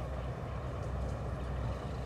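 Steady low rumble of car-interior background, with no other distinct sound.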